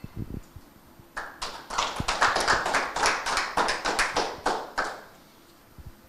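Audience applauding: a short round of clapping that starts about a second in and dies away about a second before the end.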